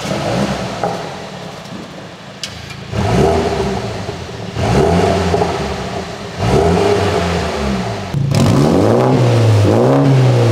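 BMW F40 M135i xDrive's 2.0-litre turbocharged four-cylinder revved at standstill through the standard exhaust, in a few separate blips that rise and fall back to idle. Near the end it cuts to a second M135i on a Remus exhaust, louder, revved in quick repeated blips.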